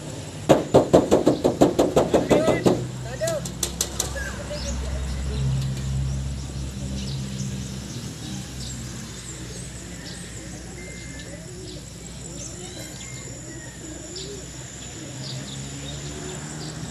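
A flock of racing pigeons bursting out of a release truck's crates, a loud rapid clatter of wing claps about six a second that starts about half a second in and dies away within about three seconds.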